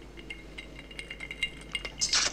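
Faint, scattered clinks and ticks of glassware and ice on a bar counter as a bourbon on the rocks is served and handled.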